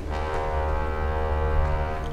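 Dark dungeon synth music: a low synthesizer chord held steady over a deep drone.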